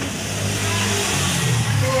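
A motor vehicle engine running and revving up, its pitch rising in the second half, with a broad rushing hiss.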